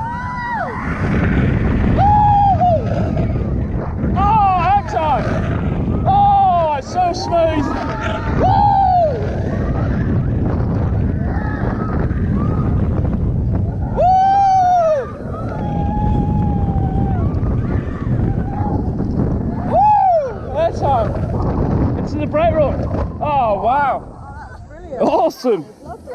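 On-ride sound of a Vekoma Space Warp launched roller coaster at speed: a heavy, constant rush of wind buffeting the rider-mounted microphone. Riders scream and whoop in repeated rising-and-falling yells, each about a second long.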